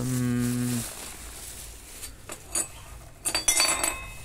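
A man's drawn-out hesitation sound, "uhh", held on one pitch for under a second. Near the end comes a short burst of plastic-bag rustling and metal parts clinking as bagged spare parts are handled.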